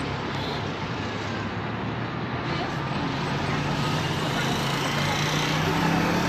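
Road traffic noise, with a vehicle engine hum growing slightly louder over the second half.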